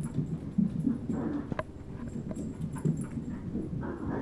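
A dog playing close by: irregular short low grunting and huffing noises with scuffles, a couple of breathy snorts and a sharp click about a second and a half in.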